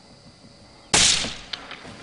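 A single rifle shot about a second in, sudden and loud, its report fading over about half a second, followed by a few faint clicks.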